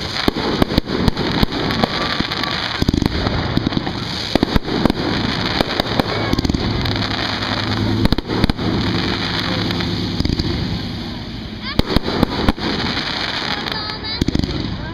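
Aerial fireworks bursting overhead: many sharp bangs and crackles, some in quick clusters, over a steady low rumble.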